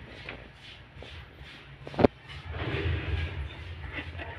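A dog shuffling about on concrete on its chain leash, with one sharp knock about two seconds in and a low rustling toward the end.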